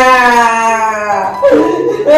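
A person's voice letting out one long, drawn-out cry that slowly falls in pitch, like a mock howl, followed by shorter vocal sounds near the end.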